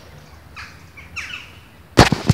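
Bird calling: a few short, harsh squawks that fall in pitch, about half a second and a second in.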